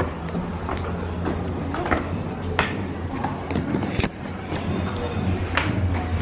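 Footsteps on stone steps, a few short knocks about a second apart, over indistinct background voices and a steady low hum.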